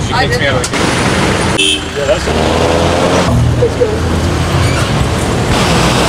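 Engine and road noise inside a moving jeepney's open-backed passenger cabin, with a short horn toot about a second and a half in.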